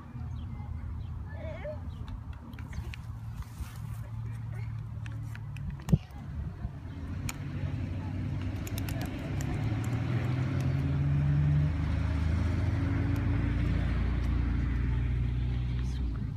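A car engine running close by, a low steady hum that grows louder through the second half. A single sharp crack comes about six seconds in, over faint distant voices.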